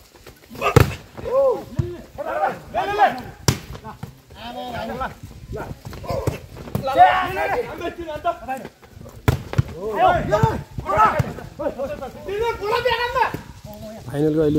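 A volleyball being struck: a few sharp smacks of hands on the ball, the loudest about a second in, amid voices calling out on and off.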